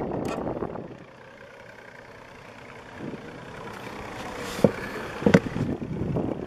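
A low, steady outdoor rumble with no clear tone, and two sharp knocks less than a second apart near the end.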